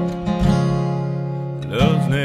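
Acoustic guitar chords strummed and left ringing. A man's singing voice slides up into a new phrase near the end.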